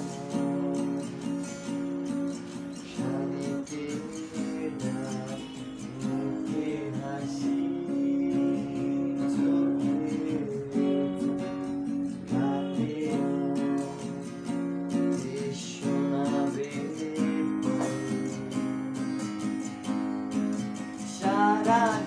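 Acoustic guitar strumming and picking chords steadily in an instrumental passage of a Bangla pop love-song cover. A singing voice comes in near the end.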